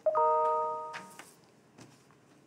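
A bell-like chime rings once, starting sharply with several overlapping pitches and fading away over about a second.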